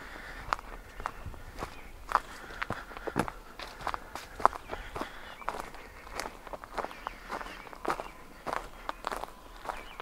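Footsteps of a person walking at a steady pace on a wood-chip mulch trail, a soft crunch about twice a second.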